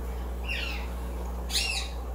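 A caged pet bird calling twice, each call rising and falling in pitch; the second call, near the end, is the louder.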